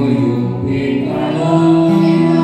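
A man and two women singing together into microphones, amplified through PA loudspeakers, with electronic keyboard accompaniment.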